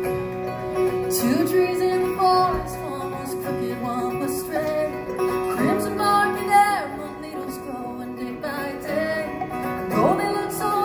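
Live bluegrass band of fiddle, banjo, acoustic guitar and upright bass playing the instrumental opening of a song, with sliding melody notes over a steady accompaniment.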